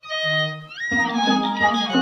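Instrumental opening of a Turkish folk song: a violin holds a note and slides upward, then the full ensemble of strings and other instruments comes in about a second in.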